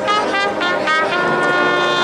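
Agrupación musical brass band playing a processional march. Trumpets and trombones play a few short notes that change pitch, then hold a long full chord from about a second in.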